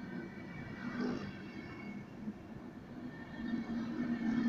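Deutsche Bahn Intercity passenger coaches rolling past along the platform: a steady rumble of wheels on rails with faint high whining tones.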